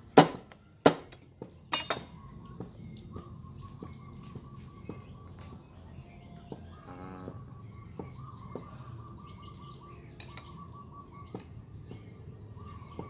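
A heavy cleaver chopping boiled crab on a wooden chopping block: four loud chops in the first two seconds, the last two close together, then light clicks of picking at the shell. Birds chirp faintly in the background.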